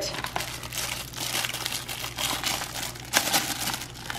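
Plastic salad-kit packets crinkling and shredded salad rustling as a hand digs through the bowl and pulls the packets out, a steady crackly rustle with one sharper crackle a little over three seconds in.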